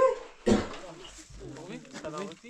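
Indistinct voices talking, loudest about half a second in, then continuing more quietly.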